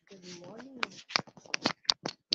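A brief murmured voice, then a quick string of sharp clicks and rustles from small objects being handled close to the microphone.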